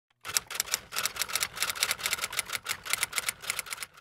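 A rapid, uneven run of typing keystroke clicks, about seven or eight a second, starting a quarter second in and stopping just before the end.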